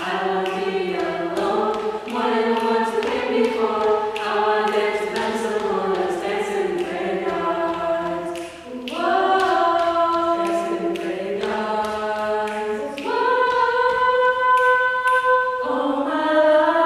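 A cappella vocal group singing in multi-part harmony without instruments, several voices holding chords together. About eight and a half seconds in the sound dips briefly before a new chord enters, and near the end a chord is held for a few seconds.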